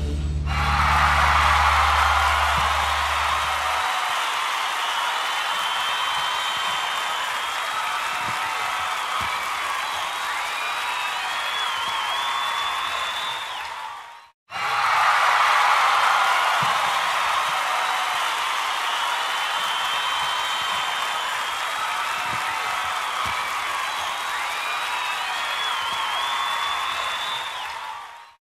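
A crowd applauding and cheering, with a few high rising-and-falling calls over the clapping. The same stretch of applause plays twice, fading out at the halfway point and starting again at once.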